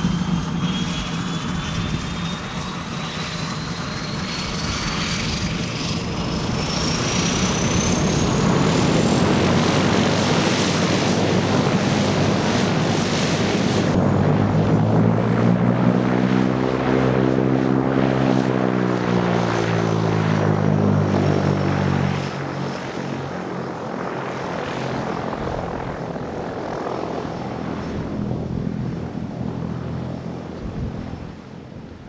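Single-engine floatplane's engine and propeller running on the water, with a thin whine climbing steadily in pitch over the first ten seconds. The engine tones are loudest and bend in pitch as the plane passes close in the middle, then the sound drops noticeably after about 22 seconds as it moves away.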